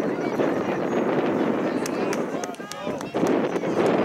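Outdoor soccer-match ambience: indistinct calling and chatter from players and spectators over a steady low rushing noise. A few sharp ticks come in the second half.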